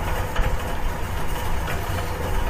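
A steady low rumble like a running engine, with no speech and no sudden sounds.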